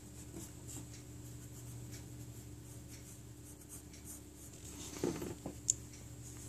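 Faint scratching of a pencil drawing on paper in short strokes. About five seconds in there is a brief soft knock, then a sharp click.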